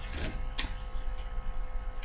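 A couple of light clicks and handling noises from a plastic DVD case being turned in the hands, over a faint steady electrical hum.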